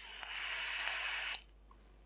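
A drag on an e-cigarette: a breathy hiss of air drawn through the dripping atomiser for a little over a second, then cutting off abruptly.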